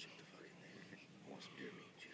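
Faint whispering voices, low and broken, over a quiet background.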